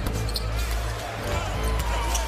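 Basketball game sound in an arena: a basketball bouncing on the hardwood court under steady crowd noise, with music playing over the arena.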